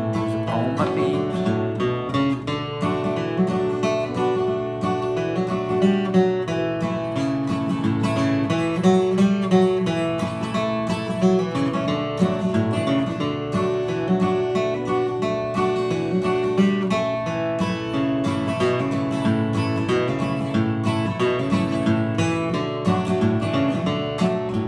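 Solo acoustic guitar playing an instrumental break: a steady stream of picked melody notes mixed with bass notes and strums, in a country or bluegrass style.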